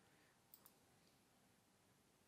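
Near silence, with one faint computer mouse click about half a second in: two quick ticks, the press and the release.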